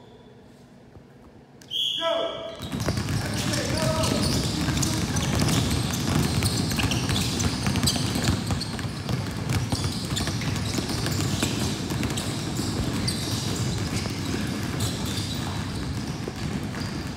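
A short whistle blast about two seconds in, then many basketballs dribbled at once on a hardwood gym floor: a dense, continuous clatter of bounces, with voices mixed in.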